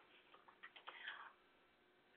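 Near silence, with a few faint short ticks in the first second or so, then nothing.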